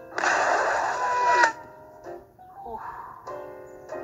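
Cartoon sound effect of a car airbag going off: a loud, sudden hiss starting just after the beginning and cutting off after about a second, over soft music. Quieter, muffled voice sounds follow.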